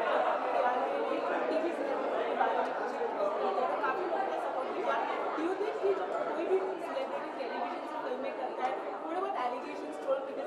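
Chatter of many people talking at once, a steady hubbub of overlapping voices in a large hall.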